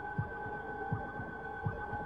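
A heartbeat: paired low thumps (lub-dub) repeating a little faster than once a second, over a steady droning hum with several held tones.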